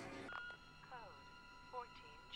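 Faint television dialogue, with a few short spoken syllables, over a soft, steady music drone.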